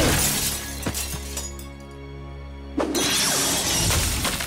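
Cartoon sound effects of ice freezing and shattering over dramatic background music. The noise dies down to a low held music note in the middle, then a sudden loud burst of noise comes back near three seconds in.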